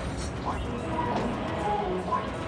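Background suspense music: short held notes at several pitches over a steady low drone, starting about half a second in.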